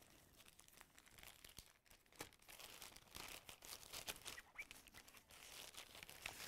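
Faint crinkling and rustling of a clear plastic zip bag being handled, a scatter of small crackles that grows busier after the first couple of seconds.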